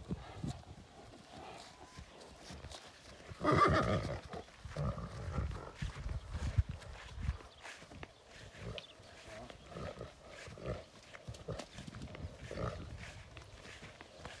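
A draft horse neighs once, loudly, about three and a half seconds in, as a stallion is brought up to a mare for mating. Low thuds of the stallion's hooves on grass follow for a few seconds.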